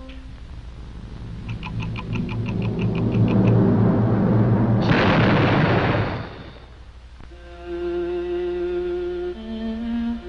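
Cartoon orchestral score building in volume, with a fast run of repeated high notes, up to a bomb explosion sound effect about five seconds in that dies away over a second or so. Soft, held orchestral notes follow.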